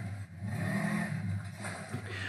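Side-by-side UTV engine revving as it is driven up the ramps onto an unhitched trailer.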